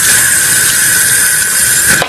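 A loud, steady screeching hiss with one high tone held through it, cutting off suddenly at the end.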